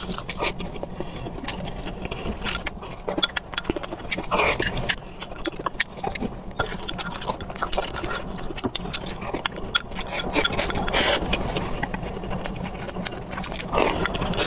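Close-miked chewing and lip-smacking of a mouthful of rice, with many sharp clicks of wooden chopsticks against a glass bowl, over a steady low hum.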